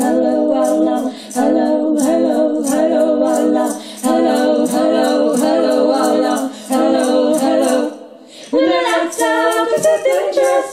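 Three women singing a cappella in harmony, in sustained phrases with brief breaks between them. Near the end the singing dips and pauses briefly, then starts again.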